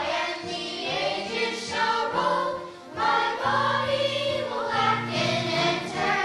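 A children's choir singing together, phrase after phrase, with a short break in the singing a little before the midpoint.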